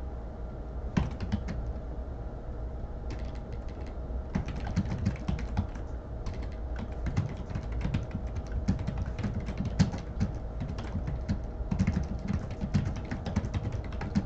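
Typing on a computer keyboard: irregular flurries of keystroke clicks, over a faint steady hum.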